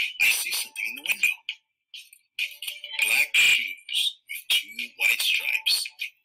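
Speech: a voice reading a picture book aloud in short phrases, with a brief pause a little before the midpoint.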